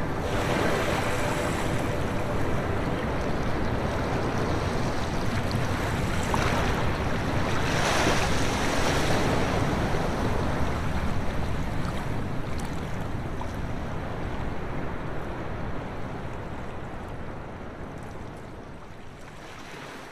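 Ocean surf washing onto a rocky shore, a steady rush that swells in the middle and then fades out toward the end.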